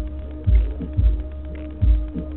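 Bass-heavy music: deep bass thumps in an uneven rhythm, roughly every half second to second, over a held bass line.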